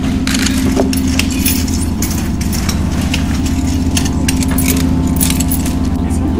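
A flurry of irregular, sharp metallic clicks and jingling over a steady low hum.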